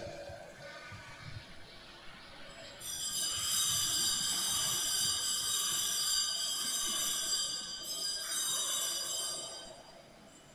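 A hand-rung bell ringing continuously, a bright cluster of steady high tones that starts about three seconds in and dies away near the end. It is the kind of bell rung in church to signal that the service is beginning.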